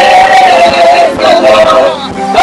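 A woman singing long, wavering held notes into a microphone, with no clear words; the line breaks off briefly about a second in and again near the end.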